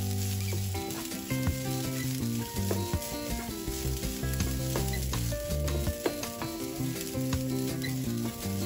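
Wooden spatula stirring and scraping boiled green gram and grated coconut in a nonstick pan, with frequent light clicks of the spatula against the pan. Instrumental background music with held notes plays under it.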